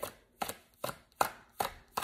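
A deck of cards being shuffled by hand, the cards slapping together in five sharp taps about two or three a second.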